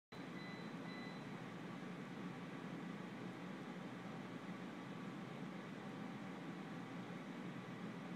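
Steady low hum and hiss of room tone, with no distinct events. A faint thin high tone sounds briefly within the first second.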